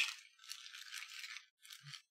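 Faint rattling from small objects being handled, uneven and lasting about a second.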